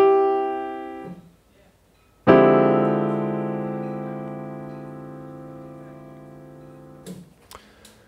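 Piano playing a D minor 7 flat 5 voicing, with D–F–A♭ in the left hand and a C–E–G triad in the right. The chord rings and fades out about a second in. Then the whole six-note chord is struck again about two seconds in and left to ring, slowly dying away over nearly five seconds.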